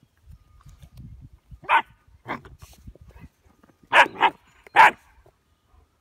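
German Shepherd puppy barking in short, high yappy barks: two spaced barks, then three louder ones in quick succession near the end.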